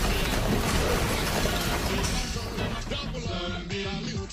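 Dense crackling noise of a sound-effect electric blast, mixed with music, dying away about halfway through. Then music with a clear melody and beat carries on.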